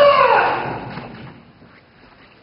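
Kendo kiai: a fencer's long, loud shout, its pitch arching up and then falling away as it fades over about a second. A few faint knocks follow.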